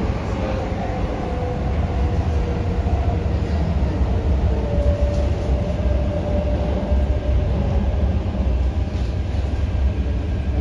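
Interior of an MTR K-Train (Hyundai-Rotem electric multiple unit) running through a tunnel, heard from inside the passenger car: a steady, loud low rumble of the train on the track, with a faint whine that drifts slowly in pitch.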